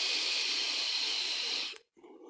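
Long drag on a vape: a steady airy hiss of air drawn through the device, cutting off sharply near the end, followed by a softer breath out.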